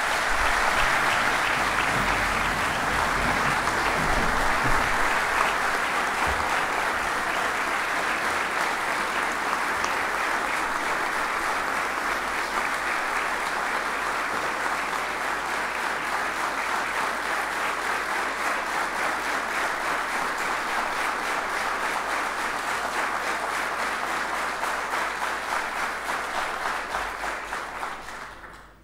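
Large assembly of parliament members applauding together in a steady, dense clapping that tails off near the end.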